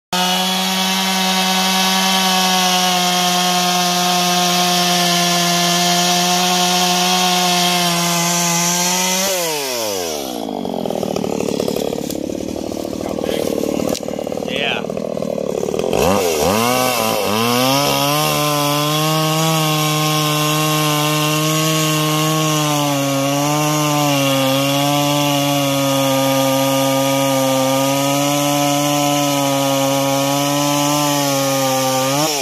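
Stihl MS 170 two-stroke chainsaw running at full throttle as it cuts through a log. About nine seconds in the engine drops to idle for several seconds, then revs back up and cuts again under load, its pitch wavering slightly.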